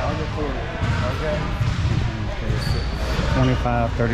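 Basketballs bouncing on a hardwood gym floor amid chatter, with a brief high squeak near the end.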